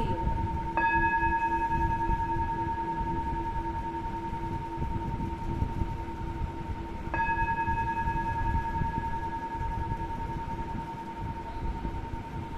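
Singing bowl struck twice, about a second in and again some six seconds later, each strike ringing on as a slowly fading tone over a steady low drone.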